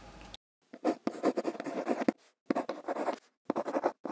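Pen-writing sound effect: short scratchy strokes of a pen on paper in several groups with brief gaps, starting about half a second in after faint room tone cuts off.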